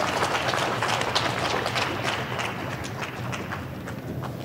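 Audience applause, many hands clapping together, slowly dying down.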